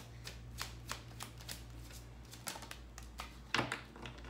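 A deck of tarot cards being shuffled by hand, cards slipping from one hand to the other in quick, irregular soft clicks, with a louder clatter of cards about three and a half seconds in.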